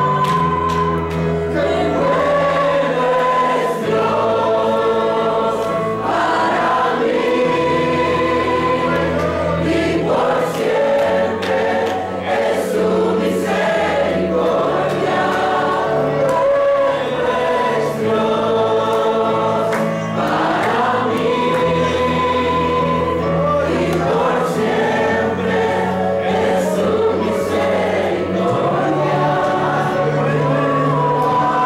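Youth choir singing a gospel worship song, with a lead singer on microphone, over instrumental accompaniment with a sustained bass line that changes note every couple of seconds.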